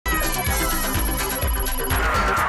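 Bright electronic theme music for a TV variety show's opening, with chiming, ringtone-like synth tones over a bass beat and a few notes sliding downward.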